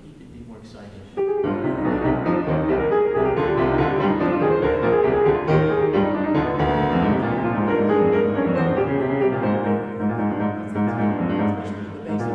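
Concert grand piano played: a loud passage of full chords and runs starts suddenly about a second in and carries on, easing off a little near the end.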